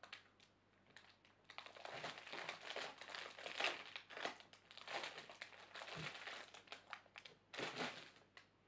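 Plastic wrapping around a stack of DVD sleeves crinkling as it is handled, starting about a second and a half in and stopping just before the end.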